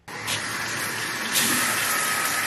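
Shower running: water spraying from the shower head in a steady hiss, louder about one and a half seconds in.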